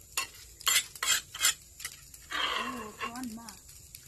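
Metal spoons clinking and scraping against plates and a bowl: several sharp clinks in the first two seconds, then a longer scraping hiss a little past halfway.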